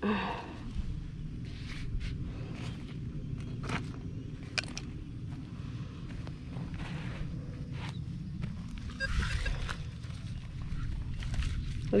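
Footsteps on dry grass and dirt, with light rustles and clicks of gear being handled.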